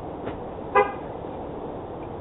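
A single short toot of a pickup truck's horn, the brief chirp a truck gives when it is locked with a key fob, about a second in, over steady street hiss.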